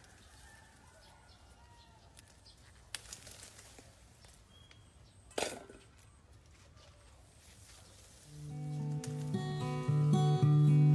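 Quiet outdoor background with a click and a brief rustling snap as calamansi are picked off the branches by hand, and a faint bird chirp. Acoustic guitar music fades in about eight seconds in and becomes the loudest sound.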